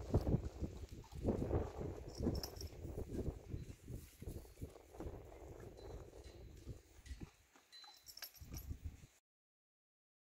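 A girth strap's metal buckle being jiggled and rattled beside a horse, giving irregular knocks with a few light clinks, the noise the horse is being taught to link with food. The sound cuts off suddenly about nine seconds in.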